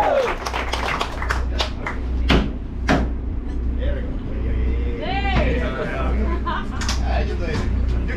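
A man addresses a seated crowd of passengers, with a few sharp claps or knocks about one to three seconds in, over a steady low hum.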